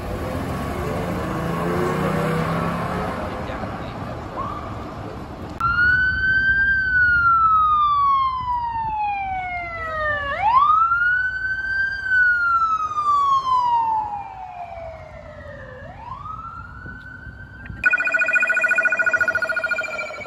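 Street traffic at first, then a police SUV's siren in wail mode: each cycle rises quickly and falls slowly over about five seconds, twice over, starting to rise again. Near the end it switches to a rapid pulsing siren tone.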